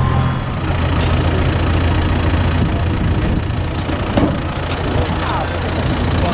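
John Deere tractor's diesel engine running steadily with a low drone.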